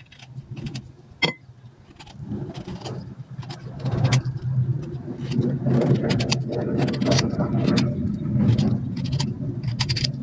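A small knife cutting and scraping the peel of a green fruit: a run of close, sharp clicks and scrapes. From about two seconds in, a low steady rumble builds up and becomes the loudest sound.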